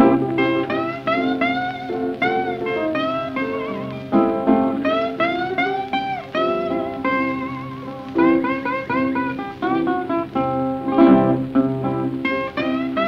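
Old blues recording: an instrumental passage led by a guitar playing a melody of separate plucked notes with bent pitches over a steady low bass line.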